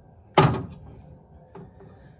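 A single sharp clunk about half a second in as a glass canning jar is set down in a stainless steel water-bath canner, followed by a couple of faint taps.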